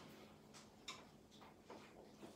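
Near silence: quiet room tone with a few faint, scattered clicks.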